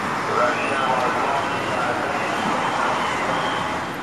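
Steady outdoor city background: road traffic noise, with faint distant voices in the first half.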